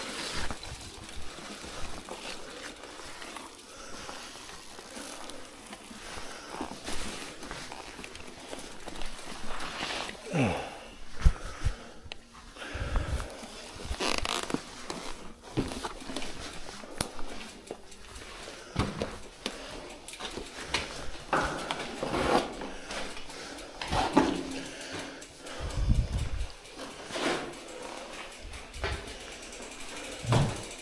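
Irregular knocks, rattles and scuffs of a loaded e-bike being wheeled over rough ground and into a small brick bunker, with footsteps and rustling. A few louder thumps stand out, the loudest about eleven seconds in.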